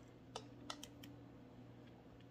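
Near silence: room tone with a steady low hum and a few faint clicks in the first second.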